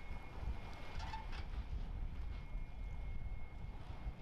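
Low, steady rumble of idling boat and vehicle engines, mixed with wind on the microphone.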